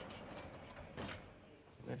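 Mechanism of a prison's security gate working, with one sharp clunk about a second in.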